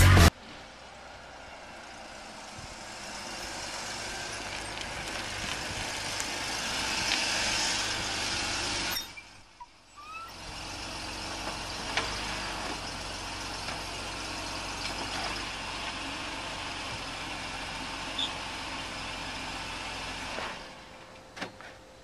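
A car approaching along a street, its engine and tyre noise growing louder over about nine seconds. After a short break comes the steady sound of a car idling at the curb, with a couple of faint clicks.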